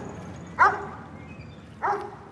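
Dog yipping: two short, high yips, one about half a second in and one near the end.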